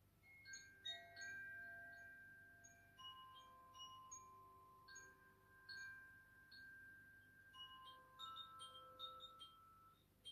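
Hanging chimes played gently by hand: many soft, irregular strikes whose faint ringing tones overlap and hang on, closing the gong bath.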